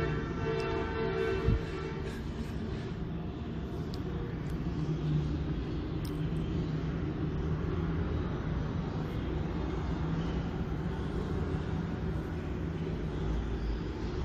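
A sustained horn-like tone with several pitches that dies away about two seconds in, with a sharp thump just before it ends, followed by a steady low rumble.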